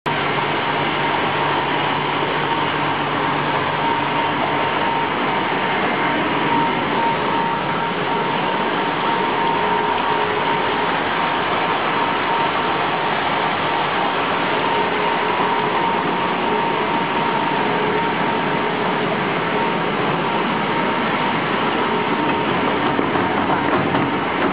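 Injecting-type ice pop tube filling and sealing machine running, a steady mechanical noise with a constant whine.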